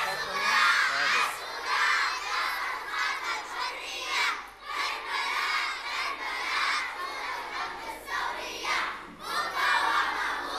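A large group of children shouting slogans in unison, phrase after phrase, with brief breaks between the chanted lines.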